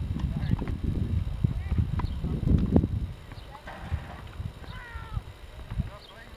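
Tennis balls struck by rackets and bouncing on a hard court: a series of sharp pops and knocks, the loudest about three seconds in, over a low rumble that fades after the first half.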